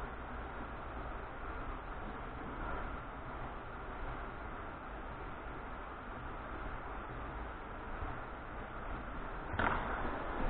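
Quiet, steady background noise with no distinct events.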